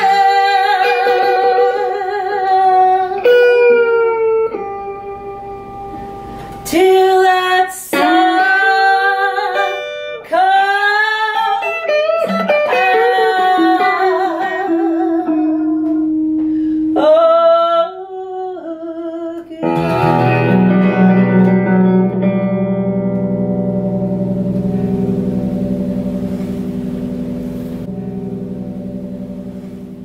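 A woman singing long, sliding held notes over acoustic and electric guitar, then the song's final chord strummed on the guitars, ringing for about ten seconds and fading away.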